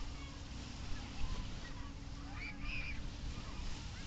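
Wind on the microphone at the shoreline over gentle surf, with faint distant voices and a brief higher call about two and a half seconds in.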